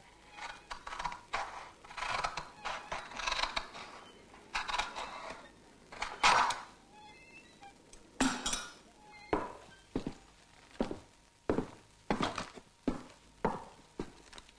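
Clattering of objects being handled in a small room, irregular for the first several seconds with the loudest clatter about six seconds in. From about nine seconds in, this gives way to a run of sharp single knocks, roughly one every two-thirds of a second.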